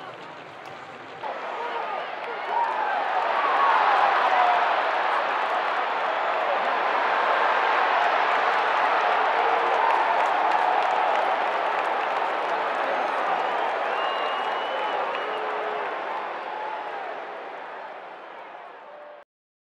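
Crowd noise: many voices cheering, with applause, a steady din that swells in over the first few seconds and fades near the end.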